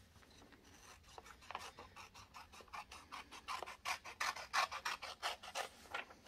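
Scissors cutting through a sheet of thin printer paper: a run of short crisp snips, a few a second, starting about a second in and getting louder in the second half.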